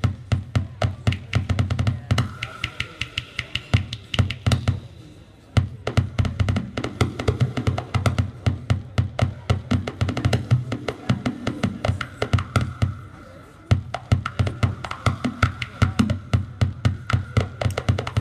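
Electronic noise music from homemade DIY synth circuits played through a small mixer: a rapid stuttering stream of clicks over a loud low drone, with a high whine coming and going. The sound cuts back briefly twice, around 5 and 13 seconds in.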